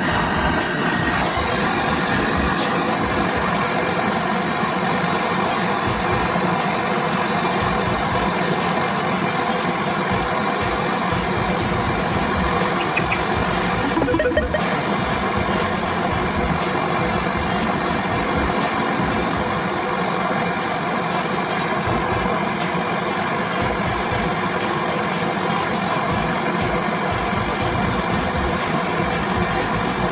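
Portable butane gas torch burning with a steady, unbroken hiss while its flame heats a copper refrigerant pipe joint on an air-conditioner compressor.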